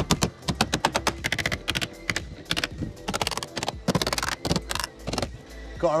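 Sheet lead being dressed with a plastic lead dresser: quick runs of sharp taps, several a second, with short pauses between the runs.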